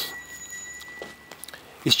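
A pause in a man's speech: faint outdoor background hush with a thin steady high-pitched tone and a few faint ticks, before his voice resumes near the end.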